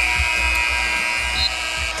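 Basketball arena game horn sounding once as the clock hits zero, marking the end of the quarter: a steady tone held for about two seconds that stops just before the end.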